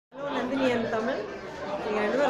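A woman speaking, her voice starting just after the opening.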